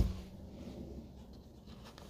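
A single dull thump right at the start, then faint scratchy rustling over a low background rumble.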